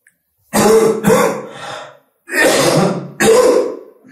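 A man clearing his throat into a close microphone: four loud coughing bursts in a row, the first about half a second in.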